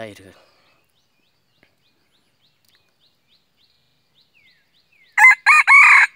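Red junglefowl rooster crowing once, loudly, starting about five seconds in: a short crow in a few broken phrases.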